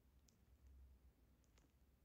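Near silence with three faint, short clicks over a low hum.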